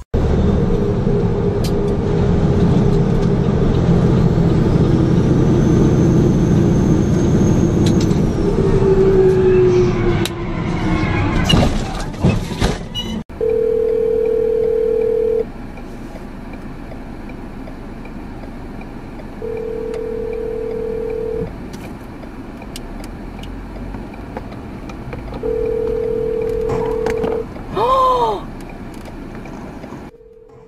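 For about the first thirteen seconds, loud, steady cab rumble of a truck driving on a highway, with a falling tone and then a cluster of sharp knocks just before a sudden cut. After the cut, a telephone ringback tone sounds three times over quiet car-cabin noise, each ring a steady two-second tone with four-second gaps, the sign of an outgoing call ringing out.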